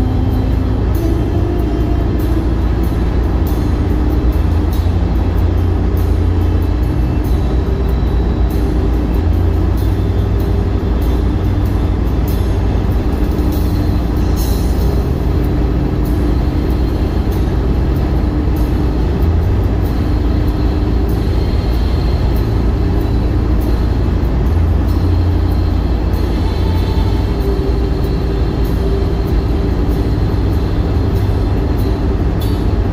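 Steady low rumble of road and engine noise inside a car cabin at highway speed, with soft music playing over it.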